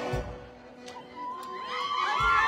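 Live band music dies down to a brief lull, then about a second in a high, wavering melodic line starts, repeatedly rising and dipping in pitch.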